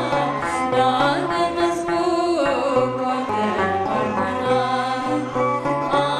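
A woman singing an Ethiopian Orthodox mezmur (devotional hymn) in a wavering, ornamented melody, over instrumental accompaniment with a bass line that steps from note to note.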